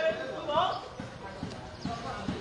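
A man's voice calls out briefly, then comes a run of light, quick taps, about four a second.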